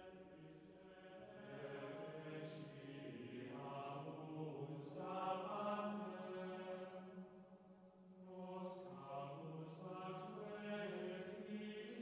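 Slow, chant-like sung music with long held notes, in two long phrases with a dip between them about eight seconds in.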